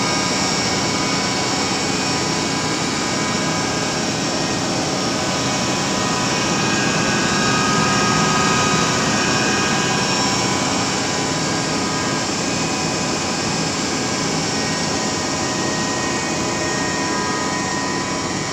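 The ANFO bulk-delivery truck's engine-driven hydraulic system and auger machinery running steadily, a constant loud machine noise with a steady high whine over it, swelling slightly about halfway through.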